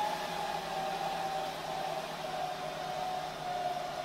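Dell PowerEdge R730 server's cooling fans running fast during boot, "getting a little angry": a steady airy rush with a whine that settles slightly lower in pitch about a second and a half in.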